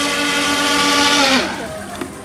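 Twin electric motors of a small RC speedboat running with a steady high whine over the hiss of spray. About a second and a half in, the whine drops in pitch and winds down.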